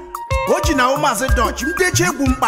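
Igbo bongo highlife song playing: a lead voice over held keyboard-like notes and deep bass notes that come about once a second.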